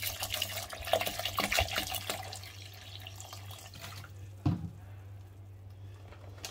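Water poured from a bottle into a blender jar onto chopped cucumber and lemon, splashing and gurgling for about two seconds and then dying away. A single knock comes about four and a half seconds in.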